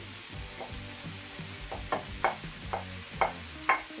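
A wooden spatula scraping and knocking sliced mushrooms off a plate into a frying pan, about two sharp knocks a second, over the faint sizzle of peppers sautéing in oil.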